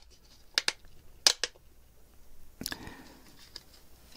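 3D-printed plastic parts clicking and scraping as a tight-fitting motor bracket is pushed into the robot's body shell: two pairs of sharp clicks in the first second and a half, then softer scraping and a few light ticks.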